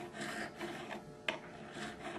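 Fret crowning file scraping faintly back and forth over a guitar's fret wire, rounding the flat landing on top of the fret into a crown, with a short sharp click just past the middle.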